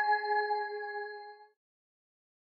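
Final held synthesizer note of an electronic track: one steady pitched tone with bright overtones, fading and then cutting off about one and a half seconds in.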